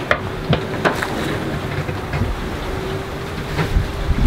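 Steady rush of wind and sea around a sailing yacht under way, with a few light knocks in the first second and a faint steady hum from about half a second in.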